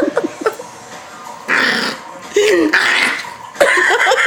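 Yorkshire terrier puppy growling in short bouts as it is tickled and held, getting louder near the end.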